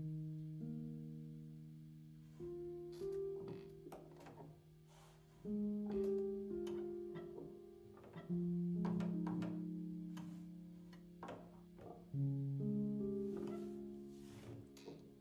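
Slow, soft chords on the Noire Felt sampled felt piano, each chord held and fading away before the next. Its 'Pianist' noise layer adds scattered clicks and creaks of the player moving around on the seat, under and between the notes.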